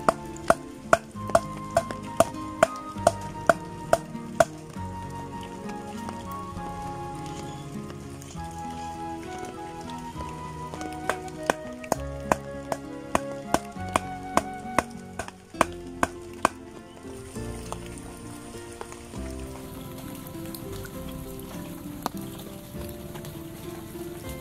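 Instrumental background music with a stepping melody, over sharp wooden knocks of stakes being pounded into the ground: a steady run of about two knocks a second for the first few seconds, then scattered knocks again around the middle.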